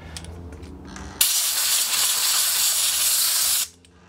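Compressed-air blow gun on an air compressor hose, blowing dust out of a desktop PC case: one steady blast of air about two and a half seconds long, starting about a second in and cutting off sharply when the trigger is released.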